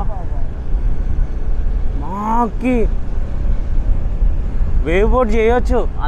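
Steady low rumble of wind and a two-wheeler's motor while riding along a road, with short spells of a voice about two seconds in and again near the end.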